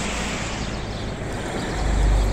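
Steady roadside traffic noise, with a low rumble that swells near the end as a vehicle draws close.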